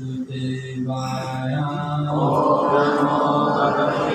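Sanskrit mantra chanted in held notes: a single man's voice at first, with a group of voices joining in about halfway through, in the call-and-response way of opening prayers before a scripture class.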